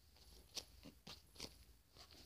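Near silence with a few faint crackles from a soft foam squishy toy being handled in the hand.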